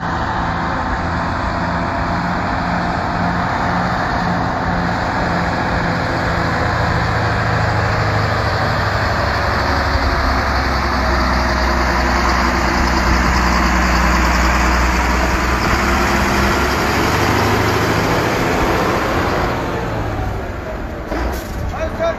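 Road traffic, with the low hum of heavy truck engines, rising and easing off as a truck drives past; loudest around the middle.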